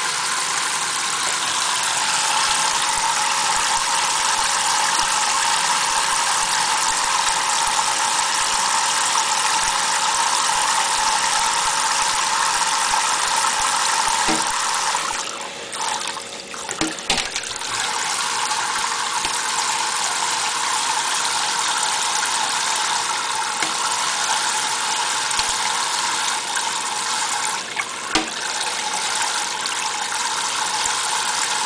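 Kitchen faucet spray running steadily, splashing into a stainless steel sink and over a parrot standing in the stream. The rush dips briefly about halfway through, with a couple of sharp knocks.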